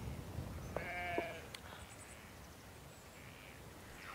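A sheep bleating once, a short wavering call about a second in, over a low rumble of wind on the microphone.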